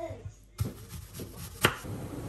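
Kitchen knife cutting through an onion onto a plastic cutting board: two sharp knocks of the blade on the board, about a second apart.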